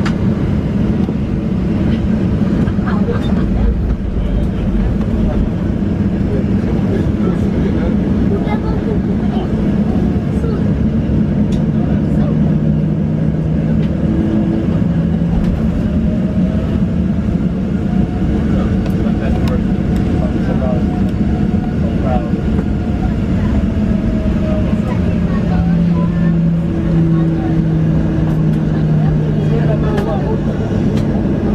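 Cabin noise of a Boeing 737-800 taxiing: a steady rumble with low engine tones, and a faint tone that rises and then falls in pitch midway.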